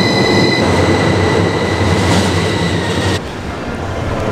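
Passenger train pulling out of an underground station platform: a loud rumble of wheels and carriages with a steady high whine over it. It cuts off abruptly about three seconds in.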